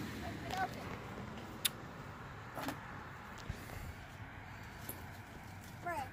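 Quiet background hum with a few faint, scattered clicks and taps.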